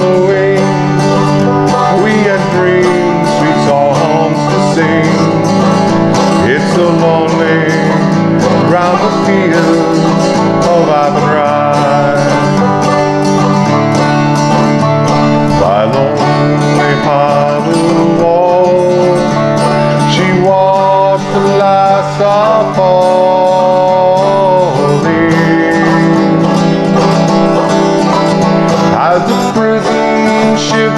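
Five-string banjo played frailing (clawhammer) style in open G tuning, carrying the melody of a slow Irish ballad over a strummed acoustic guitar, in an instrumental passage between sung verses.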